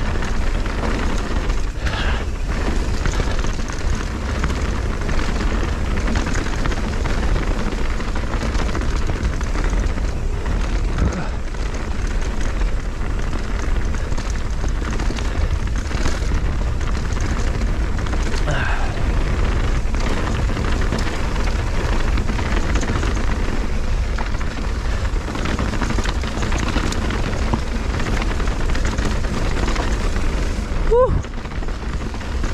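Mountain bike rolling fast down a rocky dirt singletrack: steady rumble of wind buffeting the microphone over tyre noise on dirt and loose rock, with frequent small knocks and rattles from the bike over rough ground.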